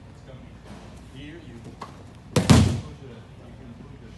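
A person thrown down onto a padded mat in an aikido takedown, the body hitting the mat with one loud thud a little past halfway.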